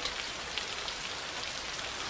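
Steady, heavy rain falling, an even hiss.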